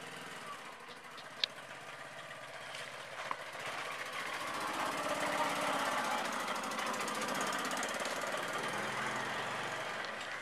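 Small engine of a homemade jeep running with a fast, even chugging, growing louder a few seconds in and then holding steady. A single sharp click comes about a second and a half in.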